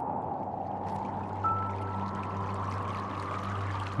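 Steady rushing of a meltwater stream over rocks, under background music holding a low drone note; a thin high note sounds briefly about a second and a half in.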